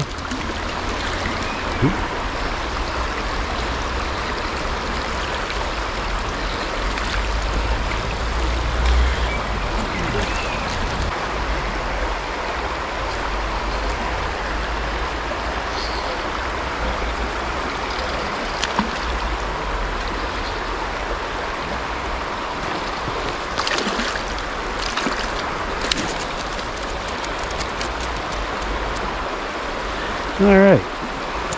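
Steady rushing of a shallow river flowing over rocks, with a low rumble that swells about eight to ten seconds in. A few brief sharp sounds come about three-quarters of the way through.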